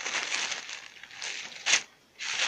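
Plastic zip-top bag of saltine crackers crinkling and rustling as it is handled, with one short, sharper crackle near the end.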